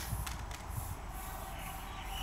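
Aerosol spray paint can hissing steadily as it is sprayed onto a wall, over a low steady rumble.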